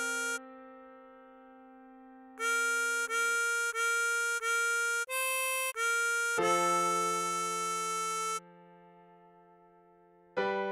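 Diatonic harmonica playing a slow melody: four short repeated hole-3 draw-bend notes (Bb4), one slightly higher hole-4 blow note (C5), the bent Bb4 again, then a long held A4 from a deeper hole-3 double bend. A sustained backing keyboard chord sounds under the long note and fades out near the end.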